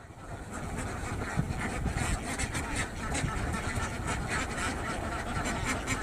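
Duck-transport boat's engine running steadily at idle, a low, even rumble.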